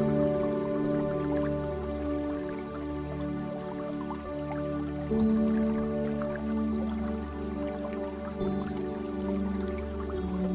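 Slow ambient relaxation music of long held chords, shifting about five seconds in and again near the end, with water drops dripping over it.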